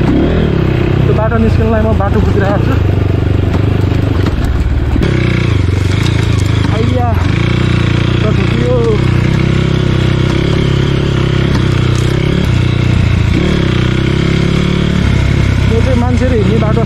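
Dirt bike engine running steadily at low speed while the bike is ridden through grass and undergrowth, its note shifting a couple of times. A person's voice is heard briefly over it a few times.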